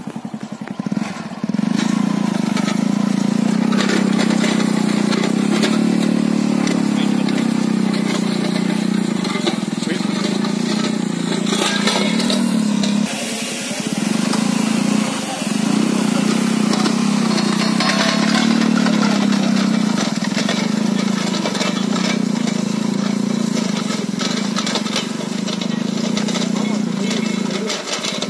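Hero Splendor motorcycle's single-cylinder four-stroke engine running under load as it drags a rear-mounted soil-levelling blade and tines through loose earth. The engine picks up about a second and a half in, then runs steadily, with two brief dips around the middle.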